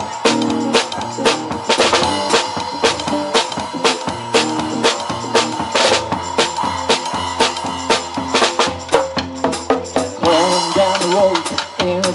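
A live rock band playing an instrumental passage: guitar over a drum kit keeping a steady beat of about two hits a second.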